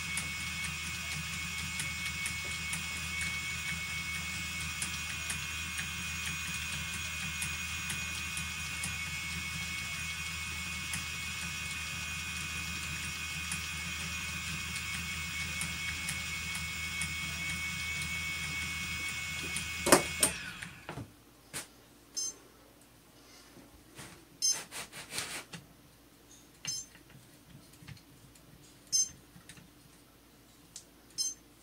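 Phoenix electric spinning wheel's motor running with a steady whine and hum as flax is spun onto it, then switched off with a sharp click about two-thirds of the way through. After that come scattered light clicks and knocks as the flyer and bobbin are handled.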